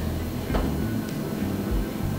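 Steady low room hum with a soft click about half a second in.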